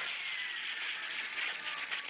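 A fire burning, a steady rushing noise of flames throughout, with a couple of brief sharp cracks near the end.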